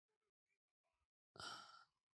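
A single breathy sigh, a short exhale about a second and a half in, against near silence.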